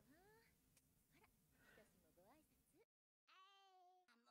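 Near silence, with very faint high-pitched voices gliding up and down, cut by a brief dropout about three seconds in.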